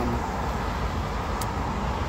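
Steady low rumble of outdoor background noise, with no clear single event.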